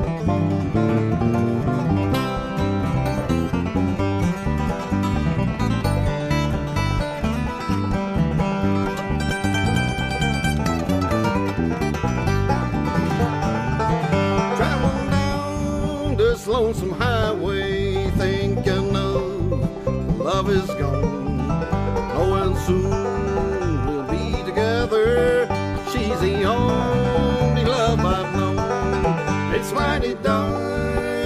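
Bluegrass trio of banjo, acoustic guitar and bass guitar playing an instrumental break between sung verses.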